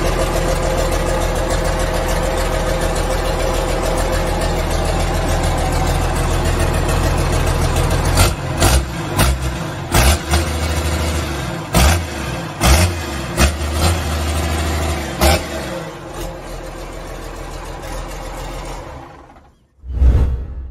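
Gardner 6LXB inline six-cylinder diesel engine running steadily on a test stand. Through the middle a run of sharp bangs cuts through and the engine note grows heavier, then the sound fades out near the end.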